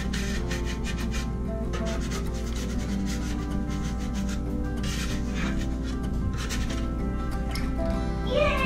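Spatula scraping across an electric griddle in a series of short strokes as pancakes are slid up and moved, over steady background music.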